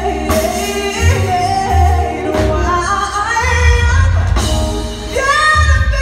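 Live neo-soul band with a woman singing long, bending notes over deep bass notes. Near the end her voice slides up into a high held note.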